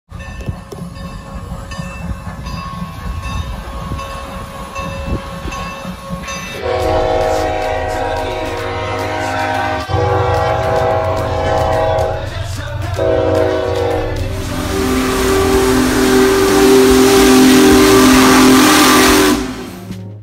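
Train whistles and horns sounding a multi-note chord in long blasts, breaking off twice. A louder, lower-pitched chord then sounds over the rushing noise of a moving train and cuts off abruptly just before the end. Before the first blast comes a faint, evenly repeating ticking.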